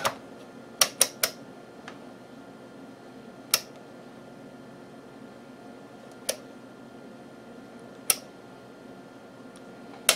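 Detented rotary range switch of an Agilent 11683A range calibrator clicking as it is turned from step to step: a quick run of three clicks about a second in, then single clicks every two to three seconds. A steady low hum runs underneath.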